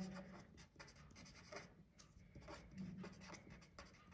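Felt-tip pen writing on paper: faint, quick, irregular strokes.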